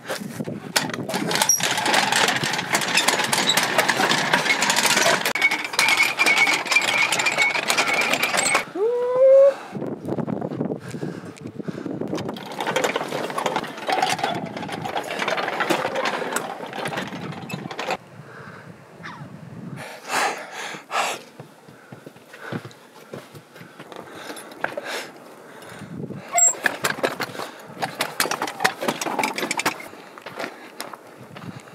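A row of prayer wheels being spun by hand one after another, a dense rattling clatter of the wheels turning on their spindles, with a short rising squeak about nine seconds in. After about eighteen seconds it thins out to quieter, scattered clicks.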